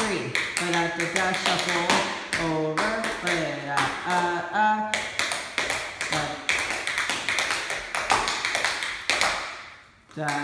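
Tap shoes striking a hard studio floor in a quick, uneven run of taps during a dance routine, with a voice singing the rhythm as 'da da da' over roughly the first half. The taps go on alone after that and fade out just before the end.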